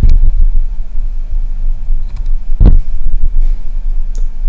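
Slotting attachment on a milling machine running: a steady machine hum over a low rumble, with a sharp knock about two-thirds of the way through and a fainter one at the start.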